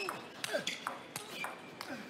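Table tennis rally: the ball clicks sharply off the rackets and the table about half a dozen times, with short squeaks from the players' shoes on the court floor.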